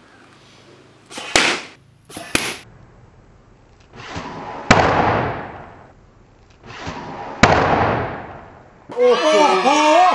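A bamboo blowgun fired with short, sharp puffs of breath, twice about a second apart. Then two loud sharp cracks a few seconds apart, each inside a rush of noise that swells and fades.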